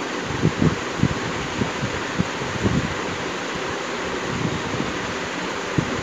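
Steady background noise, like a room fan. Over it come irregular soft low thumps and rubbing in the first three seconds or so, from a hand stroking a cat's fur close to the microphone.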